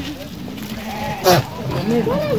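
A goat bleating: a short, loud, quavering bleat a little over a second in, with a fainter call just before it.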